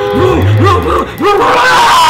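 A man's voice making quick, playful rising-and-falling sounds, about four a second.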